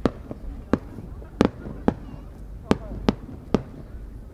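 Japanese competition firework shell (a rising-ornament chrysanthemum shell) going off in the night sky: about eight sharp pops at irregular spacing, each with a short echo.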